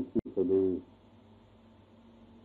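A man's voice speaking a few slow, drawn-out syllables, 'thi sadue' (at the navel), with a sharp click between them. After that a faint steady hum runs through the rest.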